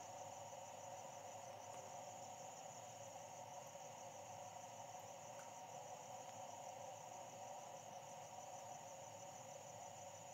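Near silence: a faint, steady background hum with a thin high tone, unchanging throughout.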